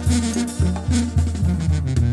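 Live banda sinaloense music in an instrumental break between sung verses. The tuba plays a bouncing bass line of short notes about twice a second under the tambora, while the clarinets and brass play fast, buzzy runs above.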